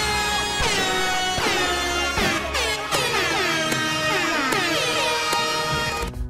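Music with air-horn sound effects: a series of horn blasts that each slide down in pitch and level off, repeating about once a second over a low bass note.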